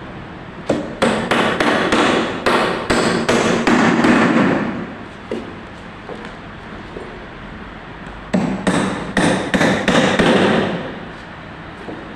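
Hammer blows on the timber and plywood of a column formwork box, struck about two to three times a second. There are two runs: one from about a second in to nearly five seconds, and a shorter one from about eight to eleven seconds.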